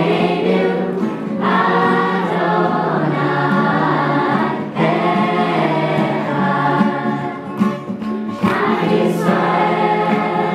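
Small mixed choir of men's and women's voices singing together in held notes, with two short breaks between phrases.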